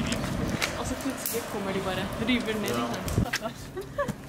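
Indistinct voices talking against steady outdoor background noise, with a few sharp clicks.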